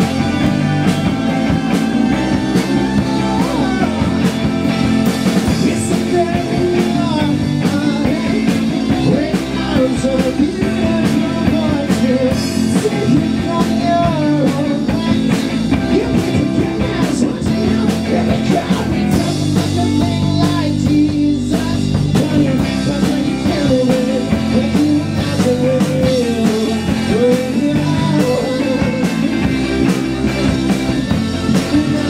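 Live rock band playing loudly and continuously: electric guitars, bass guitar and drums, with a wavering lead melody line over the band.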